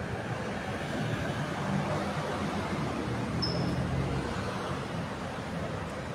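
Steady street traffic noise with a low hum running under it, and one brief high squeak about three and a half seconds in.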